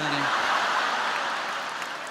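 Large audience laughing and applauding after a punchline, a dense, steady wash of sound that eases slightly toward the end.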